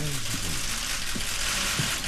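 Many press camera shutters clicking rapidly and overlapping into a continuous crackle, with low voices underneath.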